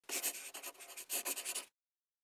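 Scratchy, hissing sound effect in two quick spurts lasting about a second and a half in all, then cut off abruptly into silence.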